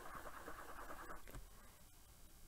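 Faint, rapid scratchy scrubbing of a makeup brush being swiped across a Vera Mona Color Switch dry brush-cleaning sponge to clear the shadow off it, stopping a little over a second in.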